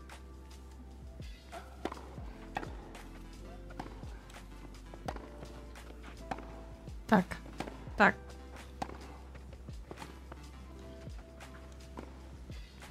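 Tennis balls struck by racquets in a rally on the televised match, short sharp pops roughly a second apart, the two loudest a little past the middle, over faint soft background music and a low hum.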